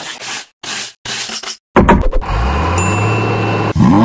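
Loose wood chips poured and scattered onto a hard model road, three short rustling pours. About two seconds in, a loud steady low drone with a thin high tone takes over.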